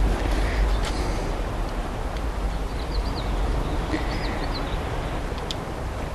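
Steady outdoor background noise with a low rumble. A few faint high chirps come around the middle, and there are a couple of small sharp ticks.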